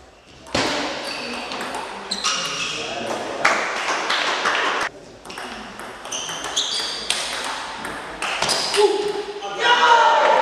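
Table tennis rally: the ball clicks back and forth off the bats and the table, with players' shouts and voices in a large hall.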